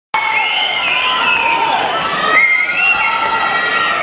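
A large audience cheering and screaming, many high voices shouting at once in long, wavering cries, loud and steady throughout.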